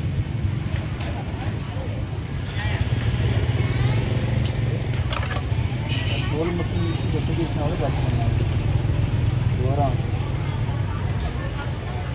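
Outdoor market ambience: a steady low engine rumble with people talking faintly in the background, clearest about halfway through, and a few sharp clicks.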